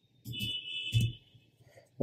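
A short high-pitched electronic tone, like a beep or alarm, sounding for just under a second, with a sharp click near its end.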